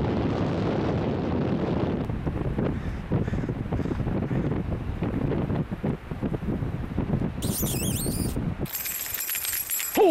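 Wind buffeting the camera microphone: a steady rumble for about two seconds, then a rougher rush with scattered knocks. A brief high wavering sound comes near the end.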